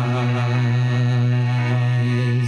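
A low male singing voice holding one long steady note with a slight waver, over soft instrumental accompaniment.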